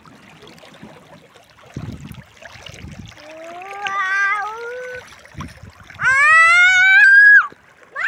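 Faint water splashing, then two long, high-pitched rising squeals from a person bathing in the river, the second louder and higher.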